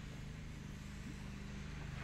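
A steady low hum with no words.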